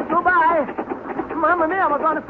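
A single voice giving wordless, sing-song exclamations in two short rising-and-falling phrases.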